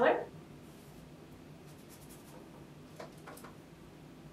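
Faint scratchy strokes of a paintbrush taking up paint from a palette and brushing it onto canvas, with two light taps about three seconds in, over quiet room tone.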